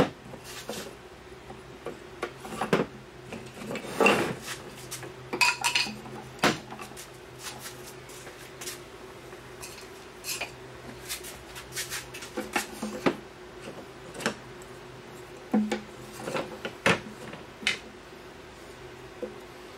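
Thin wooden beehive frame end bars clicking and clattering as they are picked from a loose pile and slotted one by one into a wooden frame jig: irregular sharp wooden knocks over a faint steady hum.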